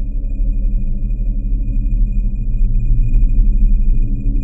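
Sound-design intro to a rap track: a low rumbling drone that slowly swells, with a thin high tone pulsing steadily over it and two short blips a little past three seconds in.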